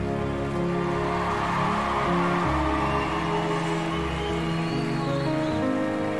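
Slow background music of long held chords, changing every second or so, with a haze of studio-audience applause underneath in the first few seconds.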